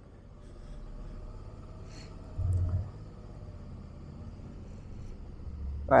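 Suzuki V-Strom motorcycle engine running at low speed, a steady low rumble with a short louder surge about two and a half seconds in.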